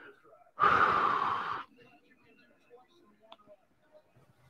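A man's sigh: one long, breathy exhale lasting about a second, starting just after the beginning.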